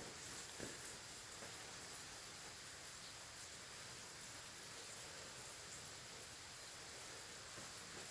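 Quiet room tone: a faint, steady hiss with no distinct event, apart from a small tick about five seconds in.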